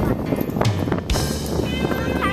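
Background music playing over the scene, with a voice heard along with it.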